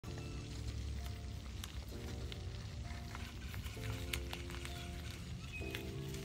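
Background music of held chords that change about every two seconds, over a steady low rumble and a few light clicks.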